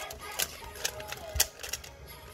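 Plastic 3x3 Rubik's cube being turned by hand, its layers making a quick run of clicks and clacks, the loudest about a second and a half in.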